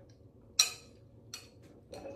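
A person sipping iced coffee through a straw from a glass with ice: one short, sharp sip-and-clink sound about half a second in, then fainter ticks about a second later.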